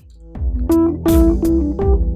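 Background music with a steady beat starts loudly about a third of a second in.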